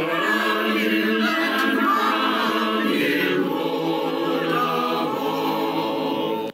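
A virtual church choir of men's and women's voices, each recorded at home and mixed together, singing in unison and harmony.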